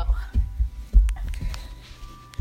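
Handling noise from a phone being moved about: a few low, dull thumps as the hand knocks the microphone, the loudest about a second in, with a few faint ticks.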